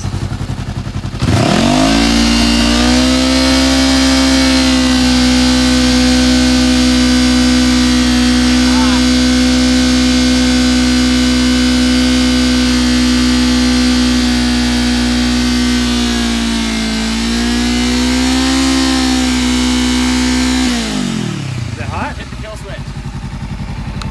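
Honda motorcycle engine revved up and held at steady high revs, its exhaust blowing into a weather balloon stretched over the muffler outlet. The revs sag briefly and come back up, then drop back toward idle a few seconds before the end.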